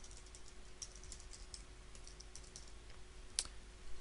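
Light typing on a computer keyboard: a scatter of faint key clicks, with one sharper keystroke near the end, a key struck by mistake.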